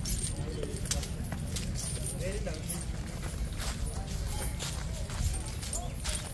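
Iron chains on a walking captive elephant's legs clinking and jangling in irregular clusters over a steady low rumble, with people's voices in the background.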